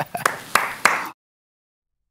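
A few scattered handclaps mixed with a laugh, cut off abruptly about a second in.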